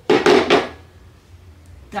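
A white ceramic bowl set down on a stone countertop, giving one short clatter of about half a second near the start.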